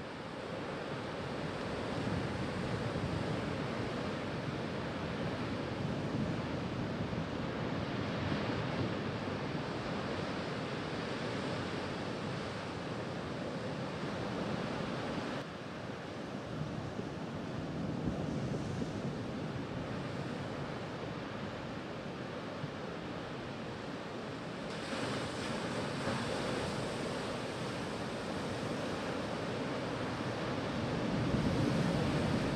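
Ocean surf: a steady wash of waves breaking on rocks, changing slightly in character about halfway through and again about three-quarters of the way in.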